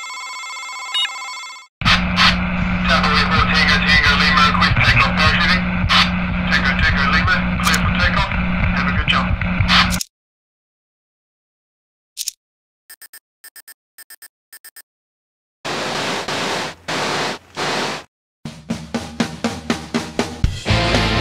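Electronic intro sound effects. A steady electronic tone comes first, then about eight seconds of dense crackling static over a low hum, like a radio signal coming in. After a pause there is a run of short, evenly spaced beeps, then bursts of static, and music with a beat starts near the end.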